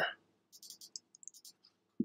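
Computer keyboard typing: a quick, faint run of key clicks, ending in one sharper, louder keystroke.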